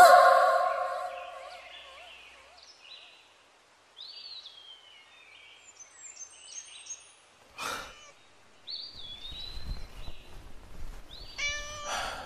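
A long, loud cry right at the start that fades away over about two seconds, then birds chirping in short scattered calls, with a brief whoosh about eight seconds in.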